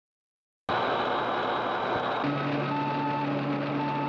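Science-fiction spacecraft instrument sound effect: a hiss starts suddenly under a second in, and from about two seconds a low steady hum joins with intermittent electronic beeps at two or three pitches.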